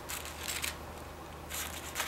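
Scissors cutting through tissue paper in short snips, pausing for a moment about a third of the way in before cutting again.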